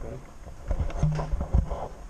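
A man's voice murmuring briefly, with low bumps from the handheld camera being moved.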